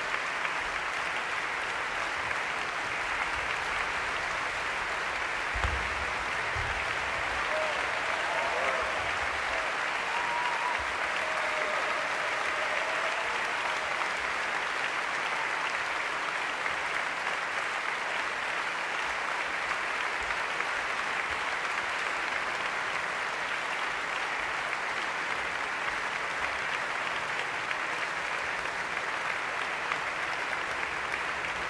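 Concert-hall audience applauding steadily, a dense, even clapping that holds throughout, with a few faint calls from the crowd about a quarter to a third of the way in.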